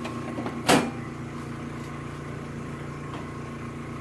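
A single sharp knock about a second in, over a steady hum with a few steady tones.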